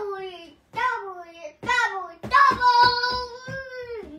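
A young child's high voice singing a few short sliding phrases, then holding one long steady note through the second half.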